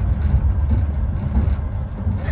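Steady low rumble of a moving passenger train, heard from inside its compartment, while a freight train passes close by on the adjacent track.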